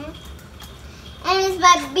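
A young girl speaking in a high voice, starting about a second in after a brief lull.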